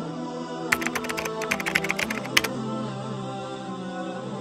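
Computer keyboard typing sound effect: a quick run of key clicks starting just under a second in and lasting under two seconds, over steady sustained background music.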